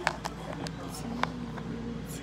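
A few sharp clicks and knocks from a handheld phone being handled and turned around, over a steady background hum; a low steady tone comes in about halfway.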